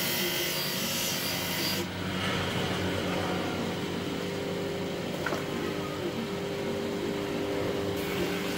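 Bench grinder sharpening a knife blade: for about the first two seconds the steel is held against the spinning stone with a harsh grinding hiss. Then the blade comes away and the grinder's motor and wheels spin on alone with a steady hum.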